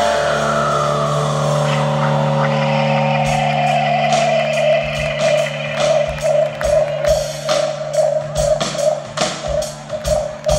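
Live rock band music: held guitar and bass chords with one tone sliding slowly downward, then the drums come in with a steady beat about five seconds in.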